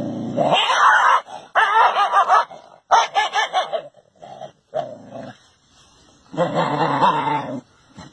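A dog vocalizing in a run of drawn-out, wavering calls, five or six bouts of about a second each with short breaks between them.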